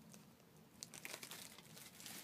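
Faint crinkling of a thin plastic bag of pepperoni rolls being handled, with a few light rustles about a second in against near-silent room tone.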